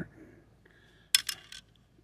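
A quick cluster of light metallic clinks a little over a second in, from the small pad-retaining pin just pulled out of a mechanical bicycle disc brake caliper as it is handled.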